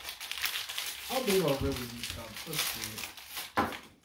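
Plastic candy wrappers being torn open and crinkled as several people unwrap peanut butter cups at once, a dense run of crackling.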